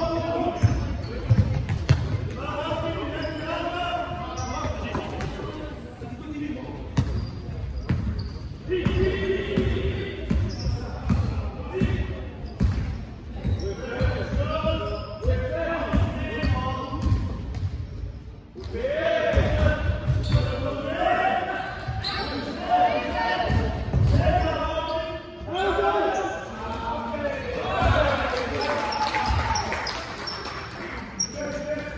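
A basketball bouncing and thudding on an indoor court hardwood-style sports floor during play, with many short knocks and echo from the large hall; players' voices call out over it.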